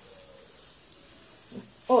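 Potato doughnuts frying in hot oil in a small wok, giving a quiet, steady sizzle.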